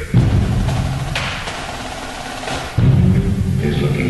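A percussion ensemble playing: a loud low drum or timpani entry just after the start, held low pitched tones, a bright wash in the middle, and a second loud low accent about three-quarters of the way through.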